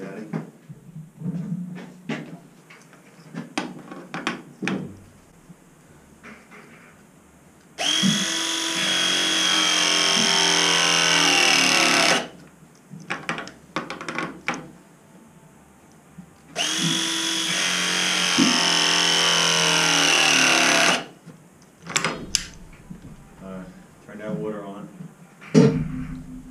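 Battery-powered press tool crimping a press coupling onto copper pipe. It makes two press cycles a few seconds apart, each a motor whine of about four seconds that drops slightly in pitch as the jaws close, with light clicks and knocks of the tool being handled and repositioned around them.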